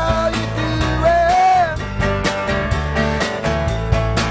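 Live rock band playing: a man singing over strummed acoustic guitar, Rickenbacker electric bass and drums keeping a steady beat, with a long held sung note about a second in.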